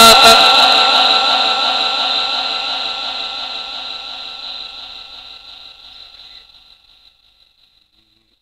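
A Quran reciter's chanted voice breaks off at the end of a phrase and its last held note rings on through the sound system's long echo. It fades away steadily over about six or seven seconds.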